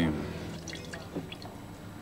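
Liquid dripping: a few quiet, short drops and splashes after the music cuts off at the start.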